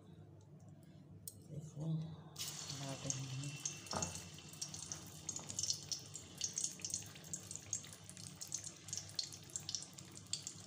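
Raw banana kofta batter sizzling and crackling as it fries in hot oil in a kadhai. The sizzle starts suddenly about two and a half seconds in, with a single knock about four seconds in.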